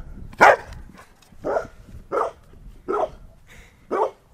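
A long-haired dog barking: five single barks, about one a second, the first the loudest.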